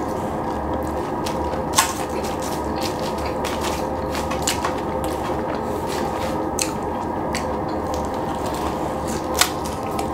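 A person chewing and crunching food, with scattered sharp mouth clicks, the loudest about two seconds in and near the end, over a steady background hum.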